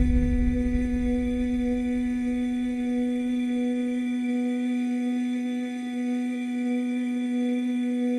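Synthesizer holding one steady low note as a sustained drone, with a slight waver in its tone. A low rumble beneath it fades away over the first few seconds.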